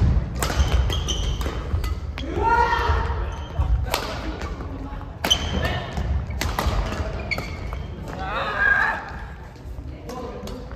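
Badminton rally in a large gym: sharp racket strikes on the shuttlecock, shoe squeaks and footfalls thudding on the wooden floor, echoing in the hall. Players' voices call out twice, a few seconds in and again near the end.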